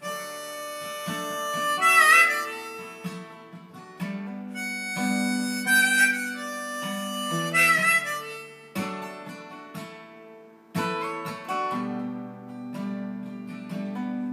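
Harmonica played over a strummed acoustic guitar as the instrumental intro to a song, with notes bent about two, six and eight seconds in.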